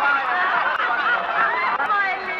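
Several shrill voices cackling and laughing over one another, in wavering high-pitched squeals.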